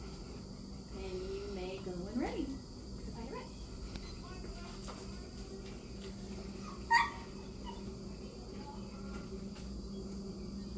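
Insects chirring steadily in the background over a low steady hum, with a faint voice around two seconds in and one short sharp sound about seven seconds in.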